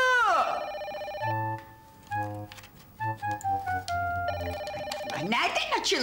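A house telephone ringing, two rings, about half a second in and again near four seconds in, with light comedic background music of short stepping notes between them. A woman's voice says "Allo" at the start and speaks again near the end.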